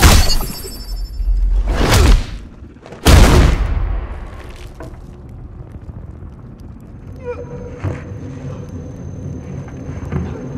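Heavy crashing impacts from a sword fight, made by added film sound effects. The first comes as a blade smashes through splintering debris, and two more follow about two and three seconds in. After them a quieter low rumble carries on, with a faint steady high tone in the last few seconds.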